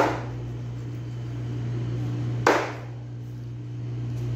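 Large knife chopping through raw chicken onto a plastic cutting board: two sharp chops, one at the start and one about two and a half seconds in, over a steady low hum.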